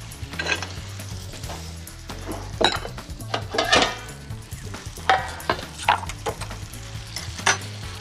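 Spinach filling sizzling in a pot as it is stirred, with several sharp clinks and knocks of utensils and pans.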